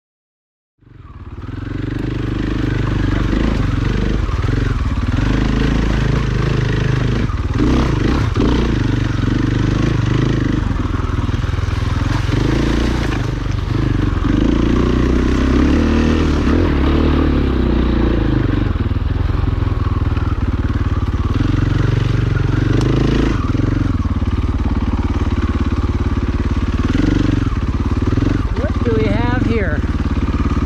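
KTM dirt bike engine running under load at low, shifting revs as the bike climbs a steep, rocky trail. The sound cuts in about a second in.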